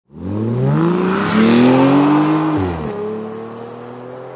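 Car engine revving up, its pitch climbing for about two and a half seconds, then dropping sharply and running on at a steadier, lower pitch.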